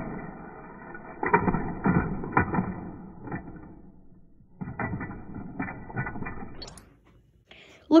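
A die-cast toy car running along plastic track, clattering and clicking over the joints, muffled. It comes in two stretches with a pause of about a second between them.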